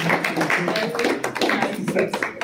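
A small group of people clapping, quick irregular claps that slowly die down.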